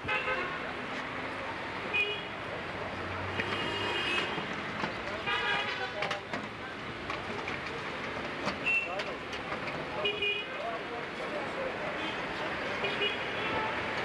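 Street ambience: a steady traffic noise with several short horn toots and voices of passers-by.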